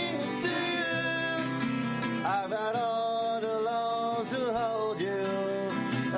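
A pop song played live on acoustic guitars, with a voice singing a melody of long held notes that glide between pitches over the guitar accompaniment.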